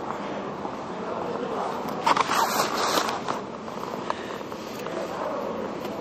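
A brief rustling scrape close to the microphone, about two seconds in and lasting about a second, the kind of noise made by handling the camera or clothing rubbing against it. It sits over a steady background murmur of people.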